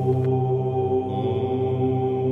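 A chanted mantra in the outro music: a low, steady, held drone of voice and harmonics, with a faint higher shimmer joining about a second in.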